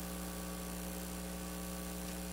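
Steady electrical mains hum with a faint background hiss, unchanging throughout.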